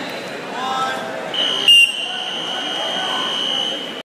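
Timing buzzer sounding the end of the wrestling period: one steady high tone that starts about a second and a half in and holds on, with a brief, louder sharp sound just after it begins. Voices in the gym run underneath.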